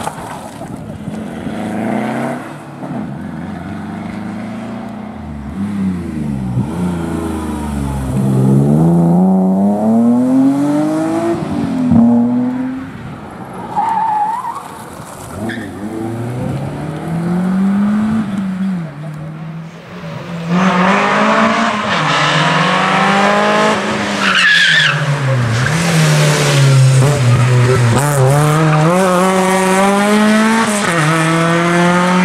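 Rally cars running one after another through a tarmac corner, their engines revving up and dropping back repeatedly as they brake, change gear and accelerate away, with a brief tyre squeal or two.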